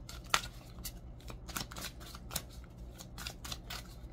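Oracle cards being handled on a tabletop: a run of light clicks and taps from long fingernails against the cards, the sharpest about a third of a second in.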